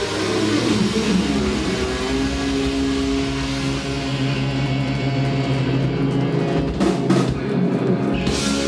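Live heavy metal band through a PA: electric guitars and bass hold a long sustained chord over the drum kit, typical of a song's closing ending, with a cluster of sharp drum and cymbal hits about seven seconds in.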